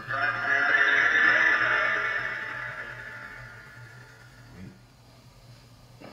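Spirit box output from a loudspeaker: a garbled, voice-like sound that starts suddenly, rings with heavy echo and fades away over about four seconds. The investigator takes it for a spirit saying 'forgot to hit your vape'.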